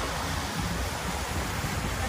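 Wind buffeting the microphone outdoors: a steady low rumble with a fainter hiss over it.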